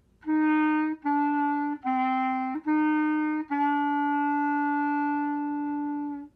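Solo B-flat clarinet playing a slow two-measure phrase of a beginner band exercise: four short separate notes, then one long held note.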